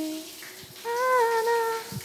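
A woman humming a slow, wordless melody in long held notes: a brief note at the start, then a longer phrase of sustained notes about a second in.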